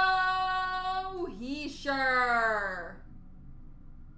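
A high-pitched voice singing, with no words made out: one long held note for about a second, a short slide, then a note falling steadily in pitch that stops about three seconds in.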